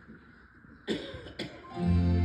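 Two short coughs about a second in, then instrumental music begins near the end with a held low note and chords: the song's introduction.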